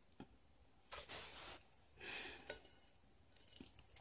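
Quiet room with a few soft, breathy noises and small clicks; the sharpest click comes about halfway through.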